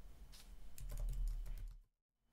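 Faint typing on a computer keyboard: a quick run of light key clicks that stops shortly before the end.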